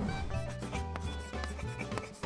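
A short music sting for a title card, played over a scratchy sound effect of chalk writing on a blackboard.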